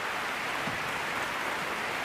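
Large arena crowd applauding steadily, greeting the winning throw that has just ended a sumo bout.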